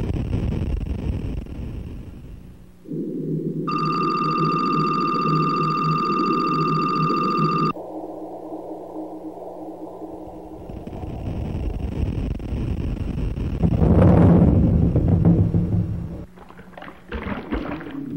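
Synthesized electronic music and tones whose layers switch on and off abruptly every few seconds. A bright, steady, high tone sounds from about four to eight seconds in, low drones follow, and there is a loud swell about fourteen seconds in.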